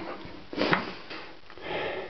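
A person sniffing and breathing close to the microphone: a few short breaths, the sharpest under a second in.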